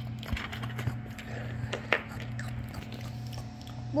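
Small plastic toy pieces being handled and set down on a toy tray: a few scattered light clicks and taps, over a steady low hum.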